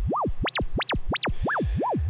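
VCV Rack software oscillator putting out a pure sine tone that is frequency-modulated, so the pitch swoops up and down about three times a second. The swoops widen to very high whistling peaks about half a second in and narrow again near the end as the modulation strength is turned up and back down.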